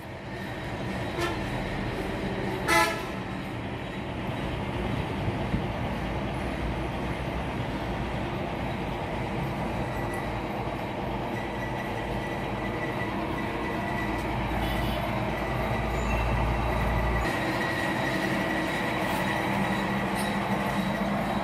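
Steady vehicle and traffic noise with a short horn toot about three seconds in. A low rumble swells and then stops about seventeen seconds in.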